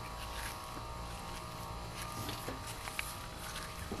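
A steady buzzing hum, with a few faint clicks scattered through it.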